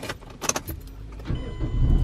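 Car keys jangle and click as the key is turned in the ignition. About a second and a half in, the car's engine starts and keeps running with a low rumble that grows louder.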